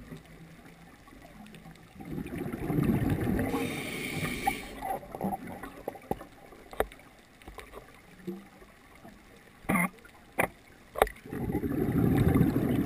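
Scuba diver's breathing through a regulator underwater: a couple of seconds of exhaled bubbles gurgling with a short hiss of inhalation, and another burst of bubbles starting right at the end. Three sharp clicks come shortly before the end.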